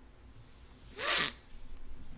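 A person's short, sharp nasal snort about a second in, a quick rasp of breath with a voice-like pitch falling steeply.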